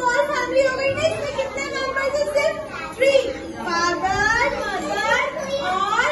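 Young children's voices talking and calling out, high-pitched and sliding in pitch, with no pause: classroom chatter of preschoolers.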